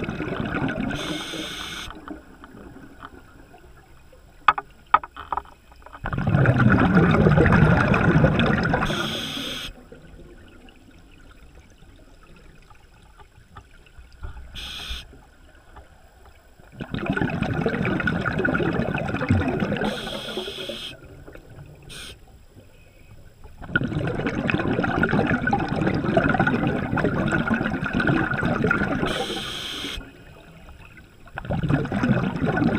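Scuba regulator underwater, a diver breathing: long bubbling exhalations every several seconds, with short hissing inhalations and quieter gaps between them. A few sharp clicks come in one of the gaps.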